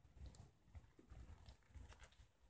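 Near silence: room tone with a few faint, irregular low knocks and soft clicks.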